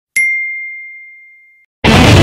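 A single high-pitched ding sound effect that rings and fades away over about a second and a half. Near the end, loud heavy rock music with electric guitar cuts in.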